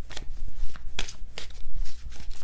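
A deck of tarot cards being shuffled by hand: a papery rustle with several sharp card slaps.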